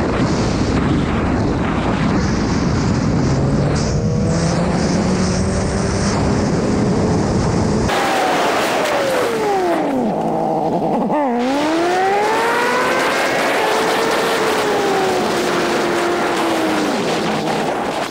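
Sport motorcycle engine under heavy wind rush on the microphone as the bike slows at speed. About eight seconds in, the sound changes abruptly to the engine alone at low speed, its pitch falling and rising several times.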